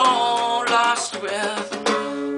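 A man singing over a strummed nylon-string classical guitar.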